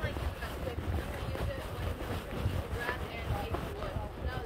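Low, uneven rumble of wind and jostling on a phone microphone carried on horseback, with faint distant voices now and then.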